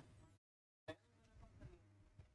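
Near silence: faint room tone with a steady low hum, broken about half a second in by a brief, completely dead gap in the audio.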